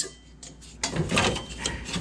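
Handling noise from a seven-inch electric cooling fan's plastic housing being moved and pressed into place against the car's engine bay. Light knocks and rubbing start about a second in.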